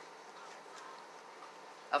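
Faint steady room noise with no distinct sound events; a woman's voice starts right at the end.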